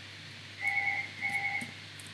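A telephone ringing in the background with a double ring: two short bursts of steady tone, one right after the other.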